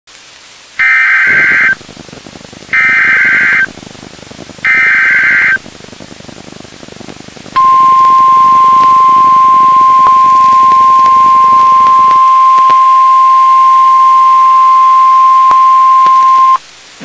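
NOAA Weather Radio Emergency Alert System tornado-warning alert. Three harsh one-second bursts of the SAME digital header, about two seconds apart, are followed by the loud, steady single-pitch warning alarm tone, which starts about seven and a half seconds in and holds for the rest. Faint radio static lies underneath.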